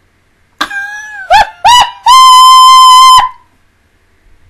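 A woman's high-pitched shriek: a falling cry, two short rising yelps, then one long held squeal of about a second that cuts off sharply. Very loud, at the top of the level scale.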